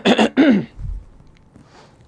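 A man clearing his throat with three quick coughs into his fist, all within the first second.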